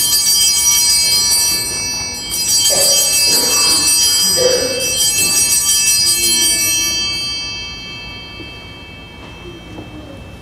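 Altar bells rung at the elevation of the host after the consecration: a bright multi-toned ringing struck at the start and again about two seconds in, ringing out and fading away by near the end.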